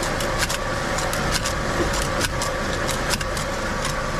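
Shrink-sleeve labeling machine and its bottle conveyor running: a steady mechanical hum with a constant tone through it, and frequent irregular clicks and ticks from the moving parts.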